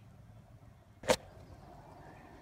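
A single sharp click or snap about a second in, over faint outdoor background.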